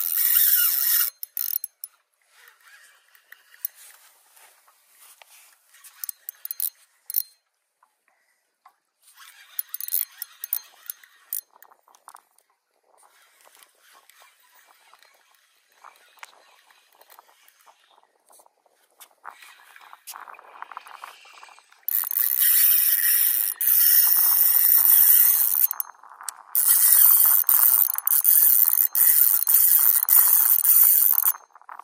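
A spinning fishing reel working in bursts: a high mechanical whir that is loud for the first second and then faint and broken for a long stretch. It is loud again in two long runs near the end, with a short break between them.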